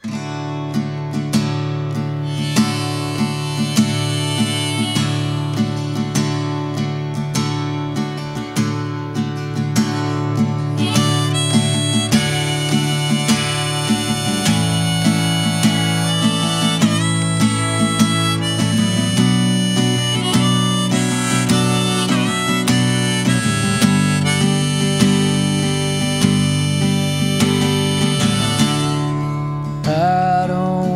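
Harmonica played in a neck rack over a steadily strummed acoustic guitar.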